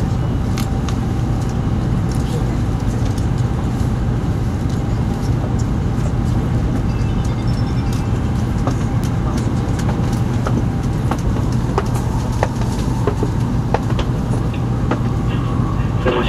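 Steady running noise heard inside a Shinkansen passenger car: a constant low rumble and hum, with scattered light clicks and ticks.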